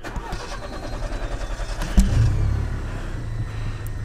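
A VW Golf GTI Mk7's 2.0 TSI four-cylinder turbo petrol engine cranking on the starter for about two seconds, then catching and running steadily at idle. This is the first start after the in-tank low-pressure fuel pump was replaced.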